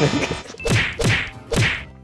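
Three edited sound-effect hits about half a second apart, each sudden and falling in pitch, marking a title-card transition.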